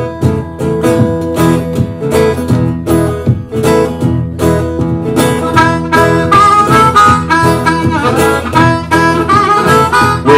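Live acoustic blues intro: an acoustic guitar strums a steady rhythm, and a harmonica joins over it, playing held and bending notes through the second half.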